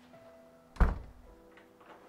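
A single heavy, deep thud about a second in, over held, sustained music tones.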